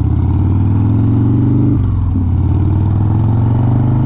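1991 Harley-Davidson Dyna Glide Sturgis's 1340 cc Evolution V-twin running under way on the road through loud pipes. Its note drops briefly about two seconds in, then runs steadily again.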